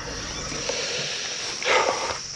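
Insects trilling steadily in the background, under a soft, even rushing noise like a long breath out; a short voiced sound comes near the end.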